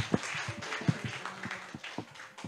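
Light, scattered clapping from a small audience as a speech ends, thinning out toward the end.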